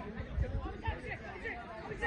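Several people chattering and calling out at once, their voices overlapping, with a few low thuds underneath.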